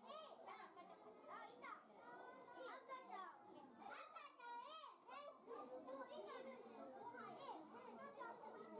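Faint, indistinct chatter of children's voices, several talking and calling out over one another.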